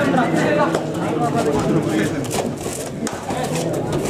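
Many voices talking and shouting over one another during a kabaddi raid, with a few sharp clicks about two to three seconds in.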